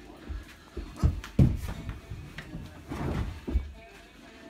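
A few dull thuds and bumps from a person moving about a carpeted room, the loudest about a second and a half in.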